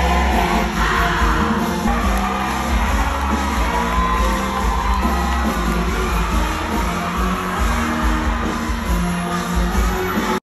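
Loud live musical-theatre music with singing in a large hall, and the audience cheering and whooping over it.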